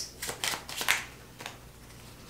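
A deck of tarot cards being shuffled by hand: a few short, soft card flicks in the first second, then quieter.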